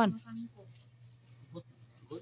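Faint scraping and a couple of light clicks from a small bladed hand tool digging and weeding in garden soil, after a voice trails off at the start. A steady low hum runs underneath.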